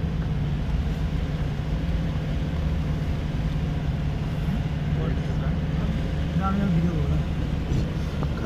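A car's engine and tyre noise heard from inside the cabin while driving on a snow-covered road: a steady low drone.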